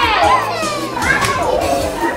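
Recorded children's music with a beat playing for a dance, with children's voices and shouts over it; a voice slides down in pitch in the first second.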